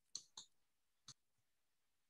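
Three faint, short clicks in near silence: two close together just after the start and a third about a second in.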